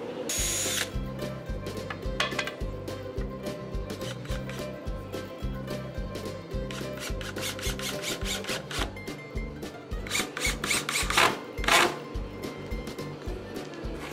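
Cordless drill driving screws into a wooden rail in short runs, the longest and loudest near the end, over background music with a steady beat.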